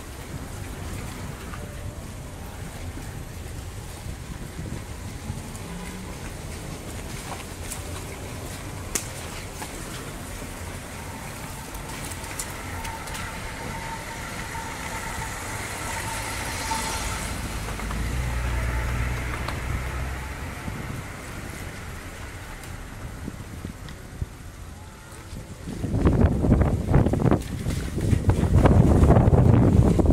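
Car moving slowly over a rough street, heard from inside the car: a steady low engine and road rumble. In the last few seconds a much louder, gusty rush of wind buffets the microphone.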